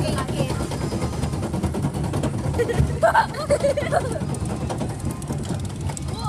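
Steady low rumble of a small fairground rollercoaster running along its track, heard from a rider's phone with wind on the microphone. A child says "wow" about three seconds in.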